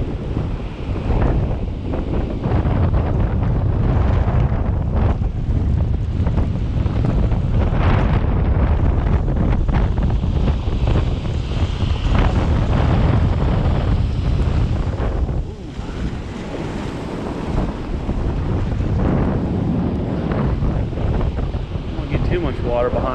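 Ocean surf breaking and washing up the beach, under heavy wind buffeting the microphone. The sound rises and falls in slow surges, easing briefly about two-thirds of the way through.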